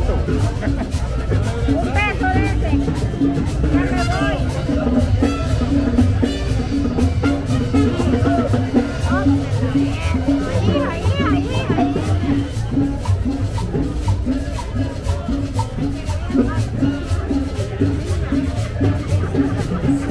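Latin dance music with a steady beat and hand percussion such as maracas, with crowd voices talking over it.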